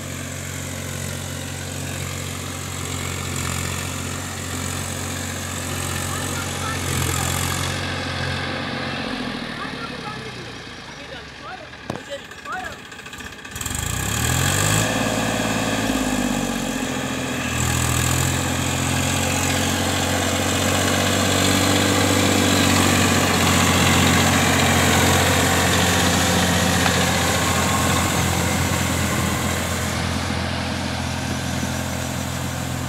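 Massey Ferguson 7250 tractor's diesel engine running steadily under load as it drives a rotavator puddling a flooded paddy. About halfway through it goes quieter with a few clatters, then its pitch rises and it runs louder for the rest.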